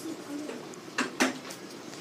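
Two light, sharp clicks about a second in, a fifth of a second apart, over low room noise.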